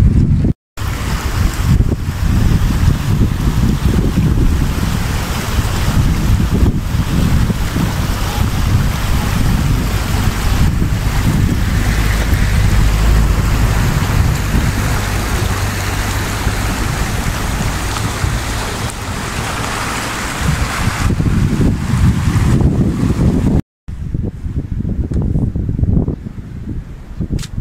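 Fast-flowing river rushing over stones, with wind buffeting the microphone. The sound breaks off for a moment shortly after the start and again near the end, and is quieter after the second break.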